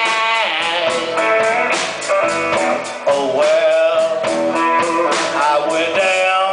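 Live electric blues band playing an instrumental passage: electric guitar, bass and drums keeping a steady beat under a lead line that bends its notes.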